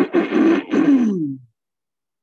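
A person's voice laughing, ending in one long drawn-out sound that falls in pitch and stops about a second and a half in.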